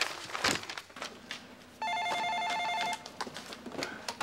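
An office desk telephone rings once, about midway through: an electronic ring that warbles rapidly between two tones for about a second. Soft clicks and rustles come before it.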